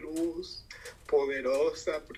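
A woman's voice heard through a video call's speaker, making two drawn-out wavering vocal sounds without clear words: a short one at the start and a longer one from about a second in.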